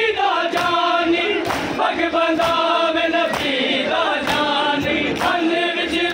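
Men's voices chanting a noha, a Shia lament for Muharram, in unison with a crowd, over rhythmic matam: hands slapping on bare chests about once a second, in time with the chant.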